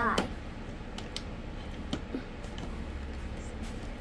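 Loose plastic Lego bricks clicking now and then as a hand rummages through a bin of them.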